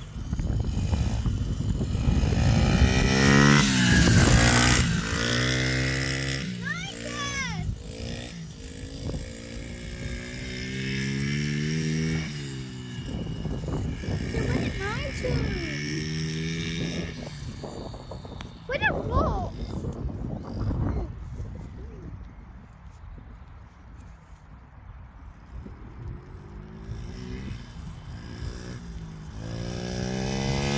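Small pit bike engine revving up through its gears, its pitch climbing and dropping again several times. It fades as the bike rides off across the field, then grows louder near the end as it comes back.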